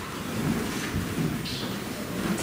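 Rustling and low rumbling handling noise close to the pulpit microphone, with a couple of brief scrapes, as the preacher's hands move on the lectern and its papers.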